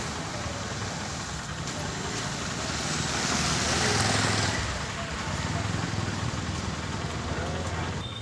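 A motorcycle riding past close by through a muddy, waterlogged road. Its engine and tyre noise swell as it passes about halfway through, then settle to a steadier engine sound.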